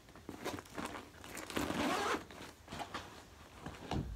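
Zipper on a fabric bag being pulled in a few short strokes, the longest near the middle, with the rustle of the bag being handled.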